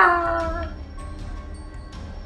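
An animal's long whining howl, its pitch wavering and dropping, fading away within the first second, over quiet background music.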